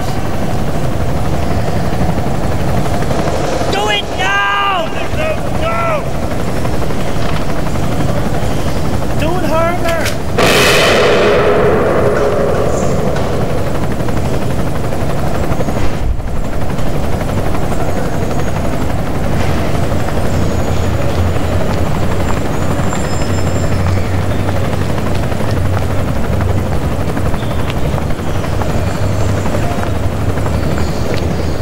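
Steady low helicopter rotor rumble throughout, with shouted voices in the first ten seconds and one loud bang about ten seconds in that rings out and fades over about two seconds. The low rumble swells in the second half.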